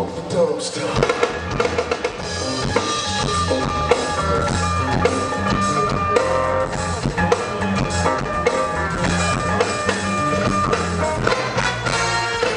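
Live band music: a brass section playing sustained chords over a bass line and a drum kit keeping a steady beat.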